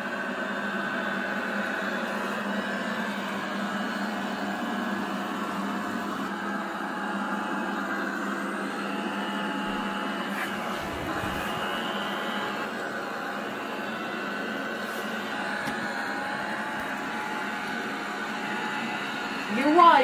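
Ultenic D5s Pro robot vacuum cleaner running on carpet: a steady motor and suction hum with a thin whine.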